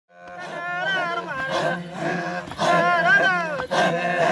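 Maasai men chanting in a group: a steady, deep guttural drone runs under higher voices that slide up and down. The sound fades in at the start.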